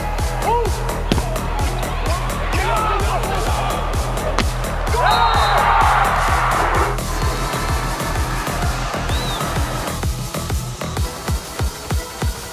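Electronic background music with a steady, even beat, laid over volleyball arena sound; the crowd swells into a cheer about five seconds in.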